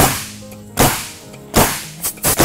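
Pneumatic coil roofing nailer firing three times, driving nails through an asphalt shingle, one shot about every 0.8 seconds. Each shot is a sharp crack that dies away within a fraction of a second.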